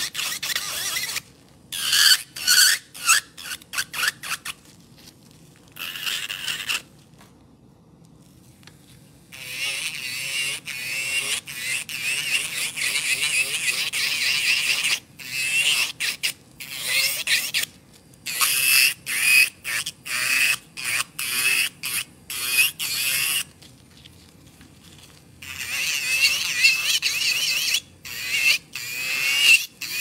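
Electric nail drill with a white ceramic cone bit grinding along the underside of an acrylic nail to clear out debris, a high-pitched whine and scrape that comes and goes in short bursts and longer passes as the bit touches and leaves the nail.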